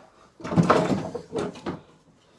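Rummaging in a wooden dresser shelf: items shifted and scraped for about a second, then a few short knocks.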